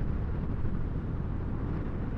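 Honda ADV150 scooter cruising at about 34 mph: a steady rush of wind on the rider's microphone over the low hum of its single-cylinder engine and tyre noise.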